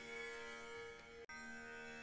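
Faint background music: a drone of a few steady held tones, with a brief dip about a second in.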